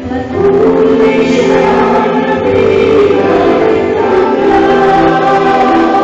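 Choir singing Christian gospel music in long held, chorded notes, a new phrase swelling in just after the start.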